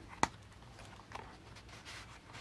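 Faint handling of a handmade scrapbook album's cardstock pages, with one sharp click about a quarter second in and soft paper rustling after it.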